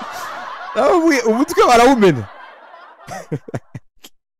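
A man laughing: a loud, drawn-out laugh with swooping pitch from about a second in, then a few short chuckles near the end.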